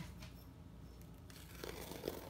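Faint crinkling and scraping of a kitchen knife working at the packing tape on a cardboard shipping box, a little louder near the end.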